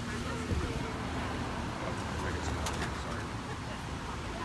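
Outdoor street ambience: steady traffic and wind noise, with a few faint clicks in the second half.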